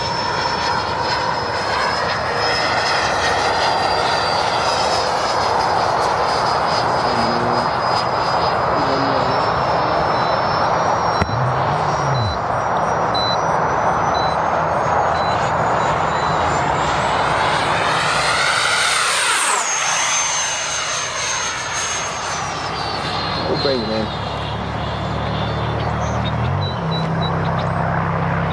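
Freewing F-18 90 mm electric ducted fan jet flying past, a high fan whine over rushing air. The whine climbs in pitch as the jet approaches, drops sharply as it passes about two-thirds of the way in, then falls again as it moves away.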